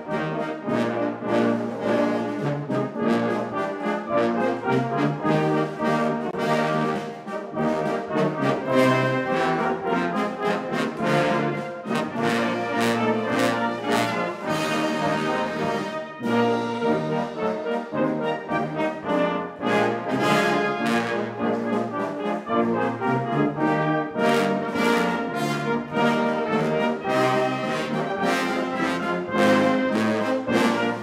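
A Salvation Army brass band playing a piece together, with trombones and tubas among the brass, under a conductor.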